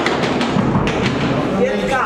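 A nine-pin bowling ball rolling down the lane with a low rumble, and voices chatting in the background.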